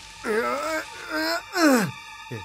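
Cartoon characters' groans and cries of pain: a wavering moan, then a short falling yelp near the end, as they are hit in a scuffle in the dark.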